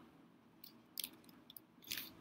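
A few faint computer-keyboard keystrokes, separate clicks starting about half a second in, as text is deleted and retyped in a web form field.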